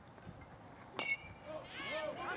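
A youth-baseball metal bat striking a pitched ball about a second in: one sharp ping with a brief ring, sending a ground ball. Voices start shouting and cheering near the end.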